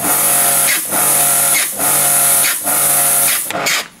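Karcher electric pressure washer running with its water jet hissing through a Dirt Blaster rotating lance, the motor and pump surging and dipping about once a second, then stopping shortly before the end. The lance is not spinning properly and the machine keeps cutting in and out, a fault laid to the lance rather than the machine.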